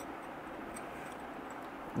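Steady low room hiss with a few faint, small ticks as fingers work a plastic insulating tab out of the battery compartment of a Boya BY-M1 Pro lavalier microphone.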